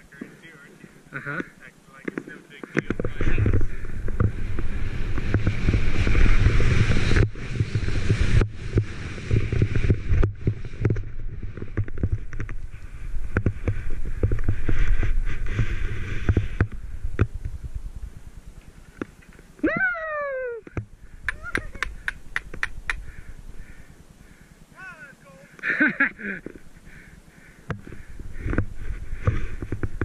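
Skis running through snow, heard from a helmet-mounted camera, with wind rushing over the microphone. The noise is loud from about three seconds in until about halfway through, then eases off. Later there are a few short, sliding voice calls and a quick run of sharp clicks.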